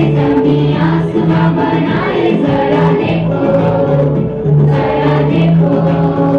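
A choir sings a worship song over instrumental backing, with a steady repeating bass pattern.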